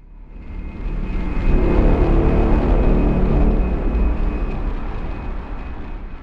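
Deep rumble that swells up over the first second or so, holds, and slowly fades, with a faint thin steady tone above it.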